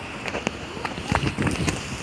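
Footsteps of someone running, with irregular thuds and knocks from the handheld phone jostling.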